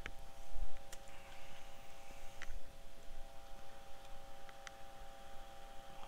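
Light, sparse clicks and a low knock about half a second in, from small items being handled on a soldering bench, over a steady electrical hum of several tones.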